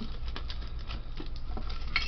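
Irregular small clicks and knocks of objects being handled, over a steady low hum.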